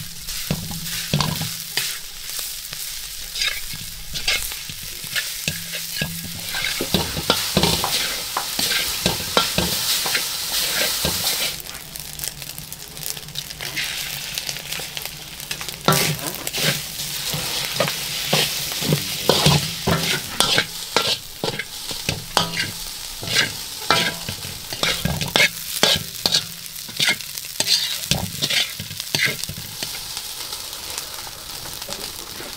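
Rice frying in a steel wok with a steady sizzle, while a metal spatula stirs and scrapes through it, clinking against the pan many times. The sizzle dips briefly about a third of the way in.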